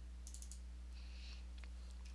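A few quick, faint computer-mouse clicks about a quarter to half a second in, a double-click opening a file, then a couple of softer clicks later on, all over a steady low hum.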